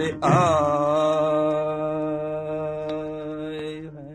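Sikh kirtan: a male ragi's voice holding one long final note at the close of the shabad, fading out near the end.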